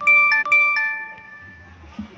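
An electronic two-note chime, a ding-dong played twice in quick succession, each note ringing out and fading over about a second.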